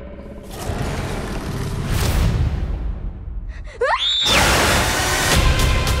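Trailer music and sound design: a low rumbling build with a swell about two seconds in, then a rising screech near four seconds that breaks into a loud, dense blast of noise.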